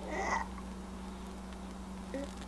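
A brief, faint voice-like call near the start, then quiet room tone with a steady low electrical hum.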